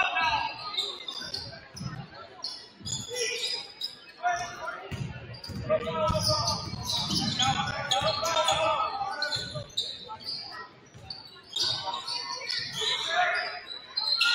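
A basketball being dribbled on a hardwood gym floor, with irregular bounces, under indistinct shouts and calls from players and spectators echoing in the gym.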